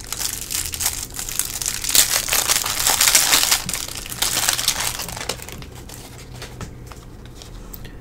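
Cellophane wrapper of a baseball card pack crinkling and tearing as it is peeled open by hand. It is loudest over the first few seconds and fades to a faint rustle after about five seconds.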